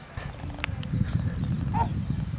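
Wind buffeting the built-in microphone of a Canon EOS Kiss X7i DSLR as a fluttering low rumble, with a small dog moving about close by, a few faint clicks about half a second in and a brief squeak near the end.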